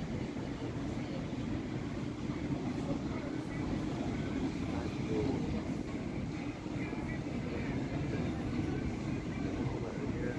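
Outdoor city ambience: a steady low rumble with faint, indistinct voices in the background.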